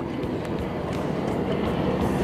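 A small boat's motor running steadily: a low, even hum under a broad rushing noise.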